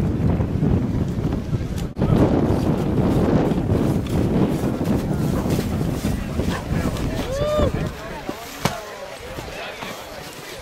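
Wind buffeting the microphone with a loud, low rumble that eases off about eight seconds in, over voices of onlookers. About seven seconds in, one person lets out a short rising-and-falling whoop.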